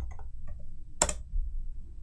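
Clicks from a computer keyboard and mouse: a few light clicks, then one sharper click about a second in, over a low steady hum.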